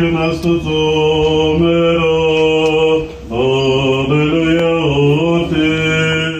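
Armenian Apostolic priests chanting a liturgical hymn in long held notes that step up and down in pitch, with a brief breath pause about three seconds in.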